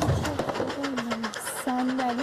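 A few low, short cooing calls, pigeon-like, each lasting about half a second.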